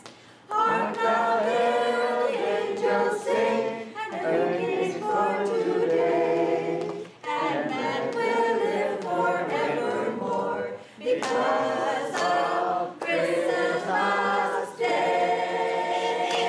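Two women singing a Christmas song into microphones, unaccompanied, in long phrases with brief breaks between them.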